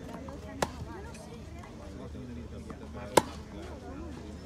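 Tennis balls struck by rackets in a baseline rally: a sharp pock just over half a second in, and a louder, closer one about three seconds in.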